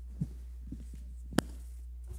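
Two soft bumps and then a sharp knock about a second and a half in, handling noise from a lectern and its microphone, over a steady low electrical hum.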